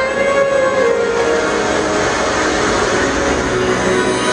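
Steady rushing drone of an aircraft in flight, under faint music.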